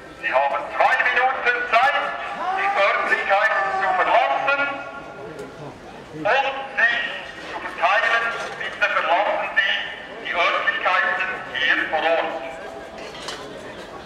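A man's voice speaking in a run of phrases with short pauses; the words are not made out.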